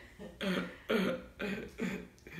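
A man laughing: four short chuckles about half a second apart.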